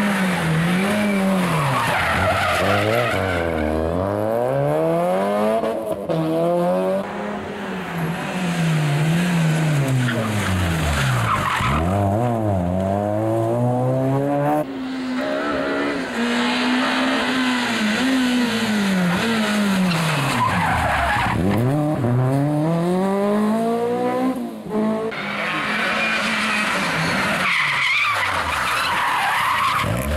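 Rally cars at full speed on a tarmac stage, one after another. Their engines climb hard in pitch and drop back again and again with gear changes and braking, with tyre squeal through the corners.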